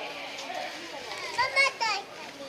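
Young children's voices, with a loud, high-pitched, wavering squeal about a second and a half in.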